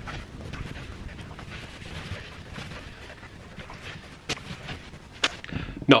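An iron sliding over a shirt on an ironing board: a soft, uneven hissing and rustling of fabric, with two sharp clicks near the end.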